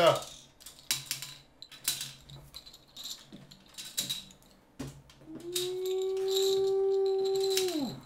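Plastic Connect Four checkers clicking and clattering a few times as they are handled on a wooden table. About five seconds in, a voice holds one long steady hummed note for about two and a half seconds, then drops off.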